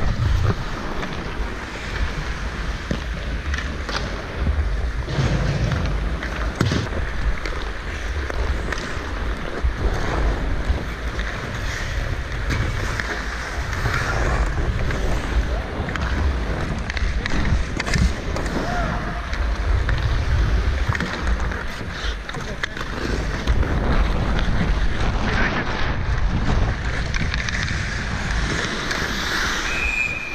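Ice hockey play heard from an action camera on the rink: skates scraping the ice and sticks and puck clacking, over a steady low rumble of air on the microphone, with players' voices calling out.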